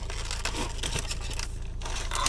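Cardboard box being opened by hand and its plastic packaging tray pulled out: rustling, crinkling and scraping of card and plastic, with a few sharper clicks near the end.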